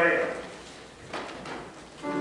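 A man's voice speaking a few words, then a brief knock about a second in.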